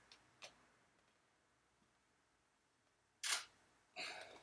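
Canon EOS DSLR shutter firing once, a short sharp clack about three seconds in, in an otherwise near-silent room, with a faint click about half a second in.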